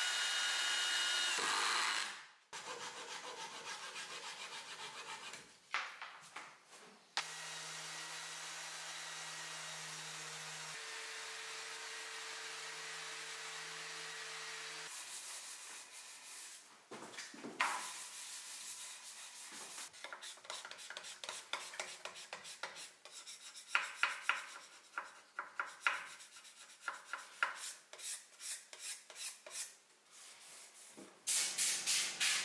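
A cordless drill whines as it drives a screw into hardwood for the first couple of seconds. After a stretch of steady noise, the second half is quick, irregular back-and-forth strokes of sandpaper rubbed by hand over a wooden frame.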